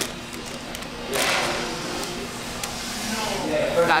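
A person biting into and chewing a soft plain glazed donut held in a paper bag, with a short rustle about a second in, over a steady room murmur.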